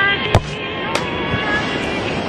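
A football struck hard twice, about half a second apart, the first strike the louder, over a noisy background with voices.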